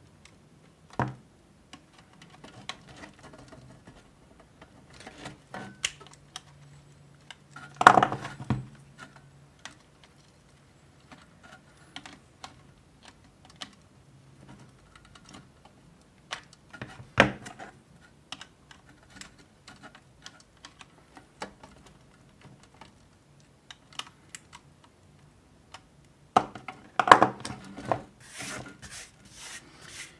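Diagonal cutters snipping and prying at solder joints and pins on a circuit board to break the metal away: irregular sharp clicks and snaps, with a few louder snaps spread through.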